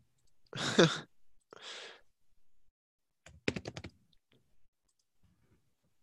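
A person lets out a voiced, sighing breath about half a second in, then a second breath. About three seconds in comes a quick run of computer keyboard clicks.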